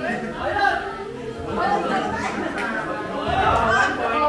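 Chatter: several people talking at once, one voice over a microphone.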